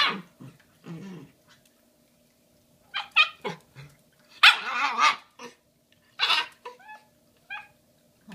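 Shiba Inu puppy barking and yipping in a string of short calls, about seven in all, some sliding in pitch, the loudest about halfway through.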